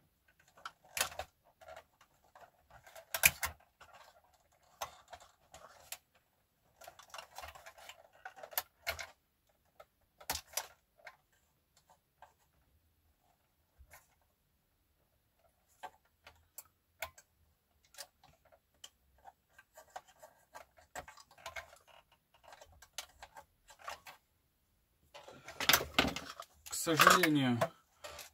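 Craft knife cutting and scraping the plastic cab of an RC model truck, in short irregular scrapes and clicks with pauses between strokes. A man speaks briefly near the end.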